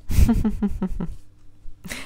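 A woman laughing briefly in a quick run of short, breathy 'ha' pulses, opening with a low thump of a hand on the table.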